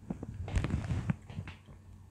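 A sip of whisky being taken: a cluster of small mouth and glass clicks with short slurping rushes over the first second and a half, then it settles to faint room background.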